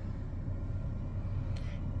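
Quiet, steady low hum of a parked 2020 Nissan Versa idling, heard inside the cabin.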